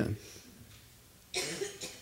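A quiet pause, then one short cough a little past halfway through, with a smaller follow-up sound just after.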